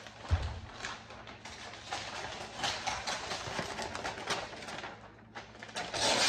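Gift-wrapping paper crinkling and rustling as it is handled and cut for another layer of wrapping, with a low bump just after the start.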